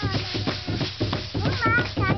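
A single drum beaten in a steady pulse of about three beats a second, with the dancers' ankle rattles shaking on each step. High gliding vocal cries rise over the beat near the start and again near the end.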